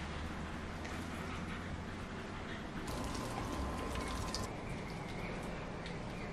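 Water pouring from a watering can into the soil of potted plants, a faint steady trickle.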